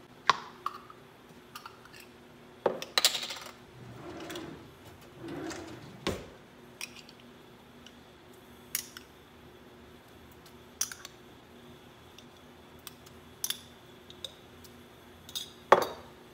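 Glass jars and a metal spoon clinking and tapping on a kitchen counter while pickle relish is spooned into a bowl of potato salad: scattered sharp clinks, two short scraping sounds a few seconds in, and the loudest clink near the end.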